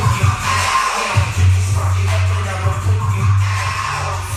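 Background hip-hop music with a deep bass line, one bass note held for a couple of seconds in the middle.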